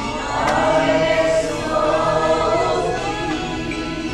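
Congregation singing a worship song together, many voices on long held notes, swelling about half a second in.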